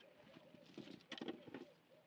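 A dove cooing faintly in the background: a run of short, low, evenly repeated notes. Soft rustling and clicks about a second in.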